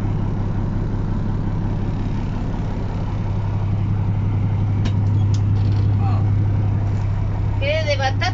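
Diesel engine of a 1962 Mercedes-Benz 312 van idling with a steady low hum, heard from inside the cabin.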